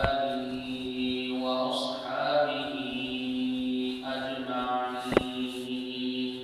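A man's voice chanting Arabic in a slow melodic recitation, holding long steady notes with short turns between them. There is a sharp click about five seconds in.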